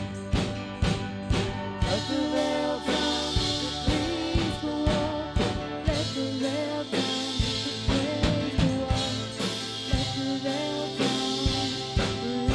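Live band music: a drum kit keeping a steady beat under electric guitar and keyboard.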